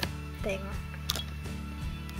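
Steady background music under a woman's brief speech, with one sharp click about a second in.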